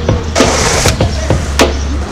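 Hip-hop instrumental beat with steady bass and drum hits, over the rolling noise of skateboard wheels on stone paving. A brief burst of hissing scrape comes about half a second in.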